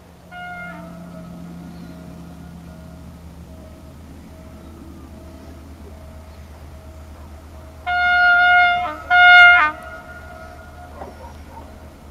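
Diesel locomotive horn sounding two loud blasts, the second shorter, about two-thirds of the way in as the passenger train approaches the station. Before them a fainter tone pulses steadily, the warning signal of the level crossing the train is about to pass.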